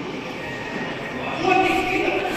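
Echoing background of a large sports hall during a youth futsal game, then a loud, held shout from a player or spectator starting about one and a half seconds in.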